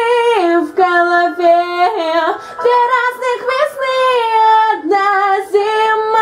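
A woman singing, holding long notes that step down and back up, with a few short breaks between phrases.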